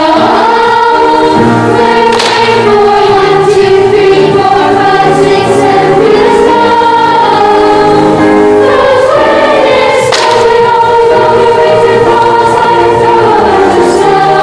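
Children's choir singing, with held notes that move between pitches and two brief sharp accents, about two and ten seconds in.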